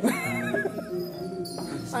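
Gamelan music with sustained ringing tones, and a wavering high voice briefly at the start.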